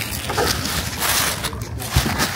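Plastic card-sleeve pages and a plastic bag rustling and crinkling as they are handled, densest about a second in.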